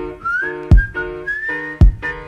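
Hip-hop instrumental beat: a whistle-like lead melody slides between notes over held chords, with two kick-drum hits about a second apart.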